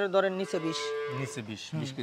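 A Friesian dairy cow mooing: one long moo lasting about a second and a half.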